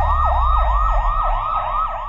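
Siren sound effect in a fast yelp, its pitch swooping up and down about three times a second over a low rumble.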